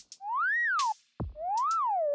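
Cartoon sound effect: two whistle-like electronic tones that each glide up and back down, one after the other, with a short thump just before the second, marking each circle as it is drawn.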